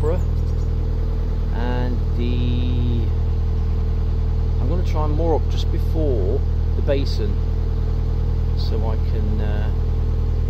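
A narrowboat's engine running steadily while cruising, a low, even drone. A few short voice sounds break in over it.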